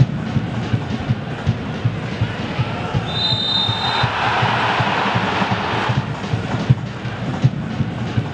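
Football match sound with steady low thumps, a few a second, from drumming in the stands; about three seconds in a referee's whistle blows for just under a second, then a swell of crowd and player voices follows for about two seconds.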